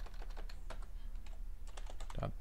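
Computer keyboard typing: irregular runs of keystroke clicks.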